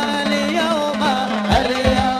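A man singing a qasidah into a microphone, a wavering, ornamented melody over a steady low held tone, with a few drum beats in the second half.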